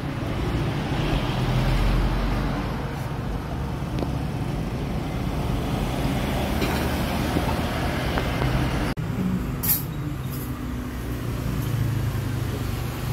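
Small motor scooters passing by in street traffic, their engines running with a steady low hum. About nine seconds in there is a short break and a sharp click.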